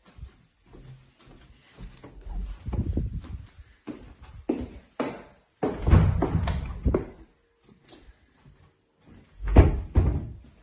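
Interior doors being opened and let shut: irregular clicks of handles and latches and knocks of the doors. The sound is loudest a little past the middle and ends in a sharp thud near the end.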